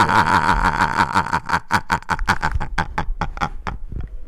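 A man laughing hard, mostly out of breath: a fast run of airy laugh pulses that thin out and fade toward the end.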